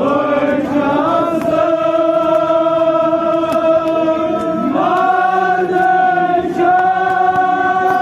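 Kashmiri marsiya, a Muharram mourning elegy, chanted by male voice in long drawn-out held notes; the line climbs to a higher held note about five seconds in.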